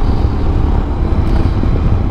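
Royal Enfield Himalayan's 411 cc single-cylinder engine running steadily under way, pulling up a steep hill, with wind noise on the microphone.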